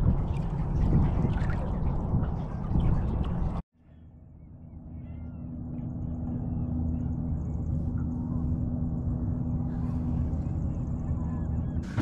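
Loud, rough outdoor noise that cuts off abruptly about three and a half seconds in. A steady low boat motor hum then fades in and runs on, with faint bird calls over it.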